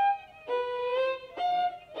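Violin played with the bow: a short note at the start, then two longer held notes, each about half a second or more, played slowly and cleanly as a practice demonstration.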